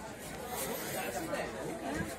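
Indistinct background chatter: low, overlapping voices with no clear foreground speaker.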